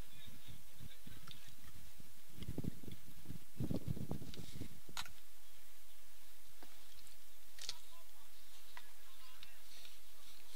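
Open-air ambience with faint, indistinct distant voices. Wind buffets the microphone with a low rumble from about two and a half to five seconds in, and two sharp clicks follow.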